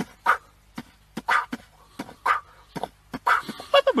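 A goat making a rapid series of short, sharp huffs and puffs through its mouth at an irregular rhythm, several to the second.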